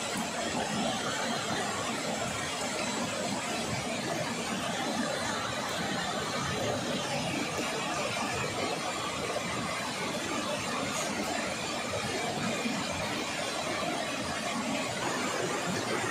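Steady rushing of a river flowing close by, an even continuous noise with no breaks.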